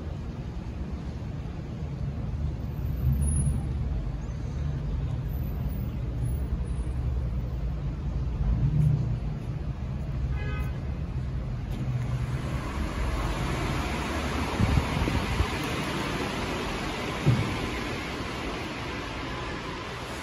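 Low, steady rumble of road traffic, which gives way about twelve seconds in to a broad steady hiss. A few short knocks come near the end.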